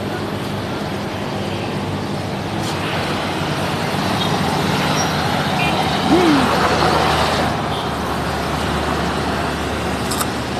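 Road traffic running steadily, with low engine hum under tyre and wind noise. A vehicle passes close and loudest about six to seven seconds in, then it eases off.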